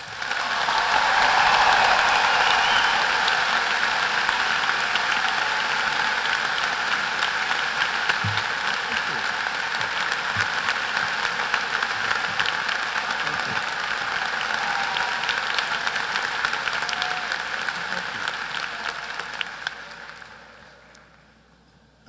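A large audience applauding. It swells quickly at the start, holds steady, and dies away over the last few seconds.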